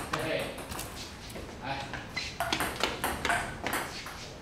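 Table-tennis ball being hit back and forth, a run of quick, sharp, irregular clicks, with faint voices under it.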